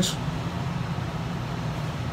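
Steady low background hum with an even hiss above it, no music or speech, running at a constant level.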